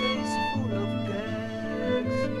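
Instrumental passage of a 1972 rock recording: a lead melody with a wavering vibrato over steady bass notes and held chords, with a cymbal crash about a quarter second in and another at the end.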